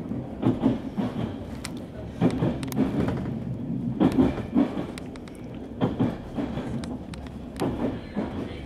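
Train running on the rails: a steady rumble with a cluster of wheel clacks over the rail joints about every two seconds, five times.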